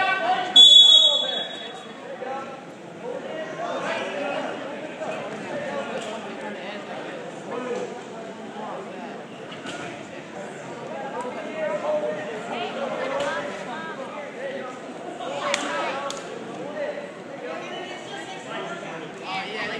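A referee's whistle blows one loud, high, steady blast lasting about a second, starting about half a second in. Crowd chatter carries on in an echoing gym throughout.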